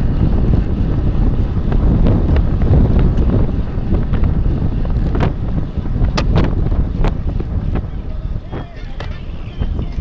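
Wind buffeting the microphone of a bike-mounted camera on a road bicycle racing at speed, a steady low rumble with sharp clicks and knocks from the bike over the road a few times.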